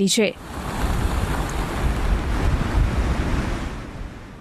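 Steady rushing outdoor wind, with a deep rumble of wind buffeting the microphone, fading near the end.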